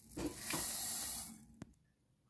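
Dry whole urad dal (white lentils) poured from a steel cup onto raw rice in a glass bowl: a hissing rush of falling grains lasting about a second, then a small click.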